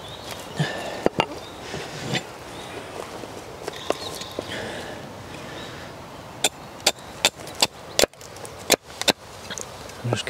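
Axe chopping a wooden spoon blank held upright on a chopping block, trimming off its sides and corners. A few light knocks come early, then about seven sharp strikes in the second half, roughly two a second.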